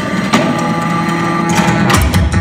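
Contemporary chamber music for baritone saxophone, percussion and electronics: a sustained low tone with one sharp click about a third of a second in, then a fast run of sharp clicks from about a second and a half.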